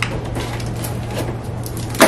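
Hands knotting the stretched neck of an inflated latex balloon: faint rubbery rubbing and small clicks as the neck is pulled and tied, with a sharp snap of latex at the very end. A steady low hum runs underneath.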